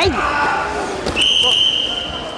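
A wrestling throw landing on the foam mat, with thuds of bodies hitting the mat and a shout at the start, and a short, high, steady squeal just past a second in.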